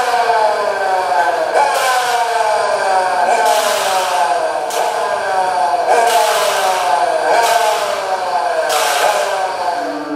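Electronic music: a dense cluster of tones sliding slowly and steadily downward in pitch, with a hissing swish returning about every second and a half.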